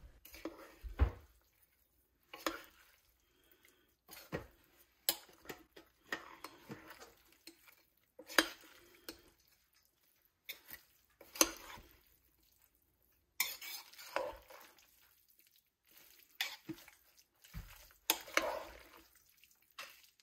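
Metal serving spoon stirring a thick mix of ground beef, bacon, cheese and tomatoes in a slow cooker's stoneware crock. Irregular clinks and scrapes come every second or two as the spoon knocks against the crock.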